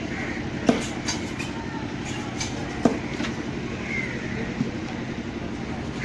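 A heavy fish-cutting knife chopping through a fish on a wooden block: three sharp knocks about two seconds apart, the last one fainter, over a steady low background hum.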